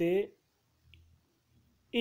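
The end of a spoken word, then a pause of near silence with one faint, short click about a second in.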